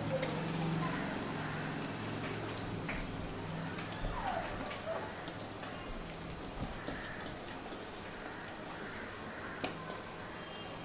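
Thick semolina batter poured from a bowl onto a steel plate and scraped out by hand, heard faintly over a low steady hum with scattered light ticks. There is one sharp click near the end.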